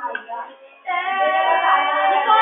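A girl's voice singing. After a short broken patch, a long held note comes in about a second in.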